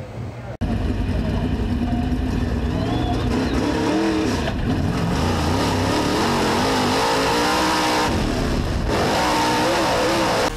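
Dirt-track race car engine running hard at racing speed, heard from inside the car, its pitch rising and falling with the throttle; it starts abruptly about half a second in.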